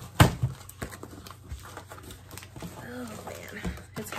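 A cardboard shipping box being handled and opened by hand, with one sharp knock about a quarter second in, then lighter clicks and rustling.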